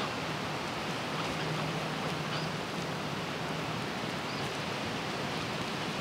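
Steady outdoor noise, a hiss like wind moving through trees, with a few faint high chirps.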